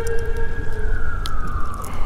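A thin high whine that slowly rises and then sinks in pitch, like a siren's wail, over a steady low rumble.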